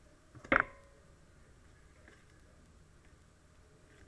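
Quiet room tone, broken once about half a second in by a short, sharp sound.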